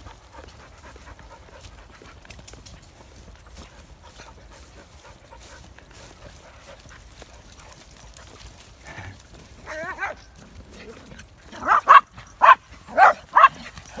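A dog barking excitedly, about five sharp barks in quick succession near the end, after a long stretch of low outdoor background.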